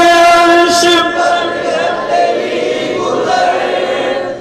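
A man singing a naat, an Urdu devotional poem in praise of the Prophet, into a microphone. He holds one long note for about the first second, then the line goes on more softly.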